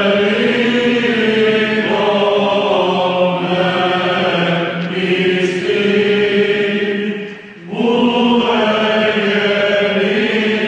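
Byzantine choir chanting in Greek: a melody moving over a steady held drone. The singing breaks briefly about seven and a half seconds in, then carries on.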